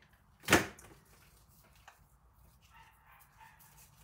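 A puppy barking once, a single short, loud bark about half a second in.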